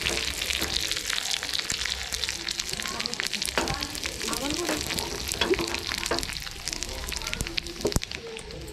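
Dried red chillies and seeds frying in hot oil in a small pan, a steady sizzle full of crackles and pops. This is the tempering being fried for a chutney.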